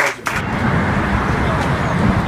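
The last couple of hand claps of applause, then, from about half a second in, steady outdoor street noise with a low rumble.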